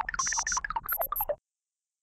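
Synthetic electronic beeping and bleeping sound effects in two short spells, cutting off abruptly into dead silence about two-thirds of the way through.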